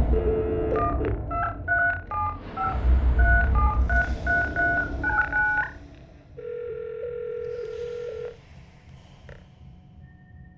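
A telephone number being dialed on a touch-tone keypad: a quick run of short keypad beeps, followed by a steady tone on the line for about two seconds.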